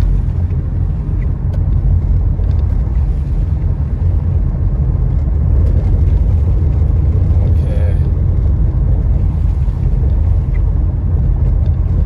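A car driving on a wet road, heard from inside the cabin: a steady low rumble of road and engine noise.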